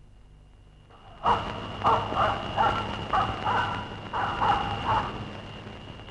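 A dog barking, a quick run of about eight barks that starts about a second in and stops near the end, over a faint steady high-pitched tone.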